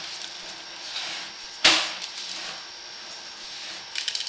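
Sewer inspection camera's push cable being fed down the line: a steady hiss with one sharp knock about one and a half seconds in.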